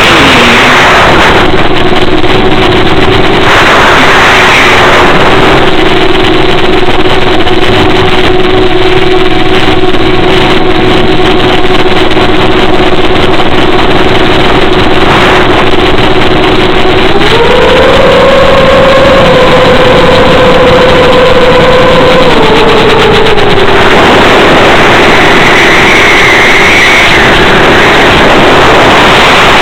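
Electric motor and propeller of an FPV radio-controlled plane heard through the onboard microphone: a steady whine under loud wind rush. The whine steps up in pitch a little past halfway as the throttle is opened for a climb, then drops back a few seconds later.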